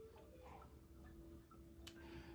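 Near silence: room tone with a faint steady hum and a single faint click near the end.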